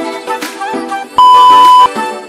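Background music with a beat, and a little past halfway a loud, steady electronic beep lasting about two-thirds of a second, an interval-timer cue marking the end of the break and the start of the next exercise.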